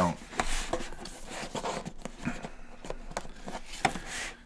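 Cardboard box being slid out of its snug cardboard sleeve: a soft, steady rustling scrape with a few small knocks, the sharpest near the end.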